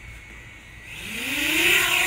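DJI Mavic Mini quadcopter's propellers spinning up as it lifts off: a whine that rises in pitch and grows louder from about a second in.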